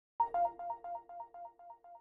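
Electronic intro sting: a bright two-note chime that repeats about four times a second and fades away like an echo.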